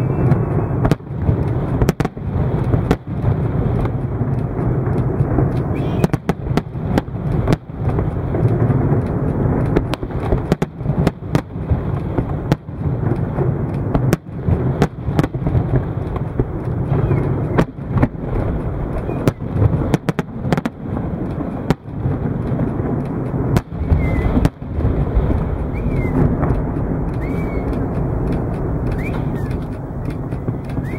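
Fireworks display: aerial shells and firework cakes going off in rapid, irregular bangs, several a second, over a continuous low rumble.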